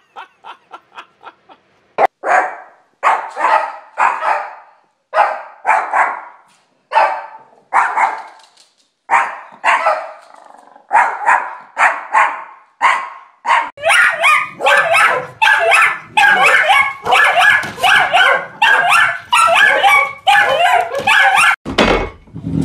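Small dog, a Yorkshire terrier, barking: sharp single barks about once a second, then rapid, nearly continuous barking over the last third. A woman's laughter comes before the barking, at the very start.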